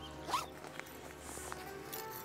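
A fabric backpack's zipper pulled open, a short rising zip about a third of a second in, followed by light handling of the bag, over soft background music.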